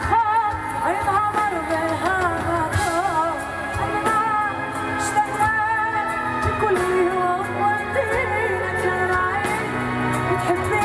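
Female lead vocalist singing live with her band in a Mizrahi pop song, her voice sliding and wavering through ornamented melodic runs over bass and drums.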